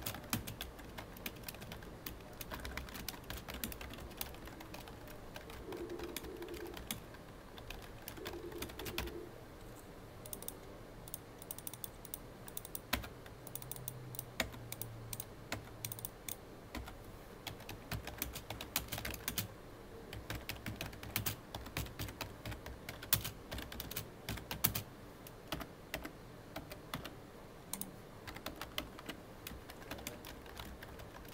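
Typing on a full-size computer keyboard: a continuous, irregular run of key clicks, coming in quicker flurries and sparser stretches.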